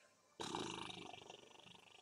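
A rough, growl-like sound that starts suddenly about half a second in and trails off over about a second and a half.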